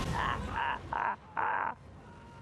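A man screaming in four short, hoarse cries in quick succession, the last one the longest, as he is set on fire.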